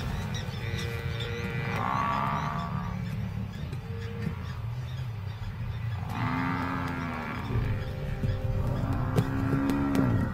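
Dramatic documentary score over a buffalo herd under lion attack, with two drawn-out buffalo bellows rising and falling in pitch, about two seconds in and again about six seconds in, over a continuous low rumble.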